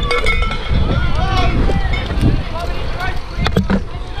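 Indistinct voices calling out, with no clear words, over a steady low rumble and rustle of a climber's camera microphone moving through a tree. A couple of sharp knocks come about three and a half seconds in.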